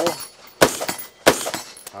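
Three rifle shots from a 5.56mm AR-15 carbine, fired at a steady pace about two-thirds of a second apart, each followed by a short echo.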